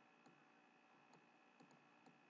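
Faint computer mouse clicks, four short clicks over near silence, two of them close together near the end.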